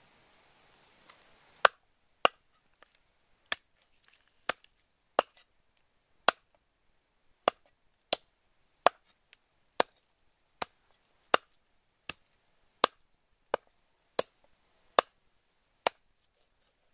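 Cleaver chopping a raw chicken into pieces on a round wooden chopping block: a run of sharp, single chops, about one every three-quarters of a second, starting a couple of seconds in.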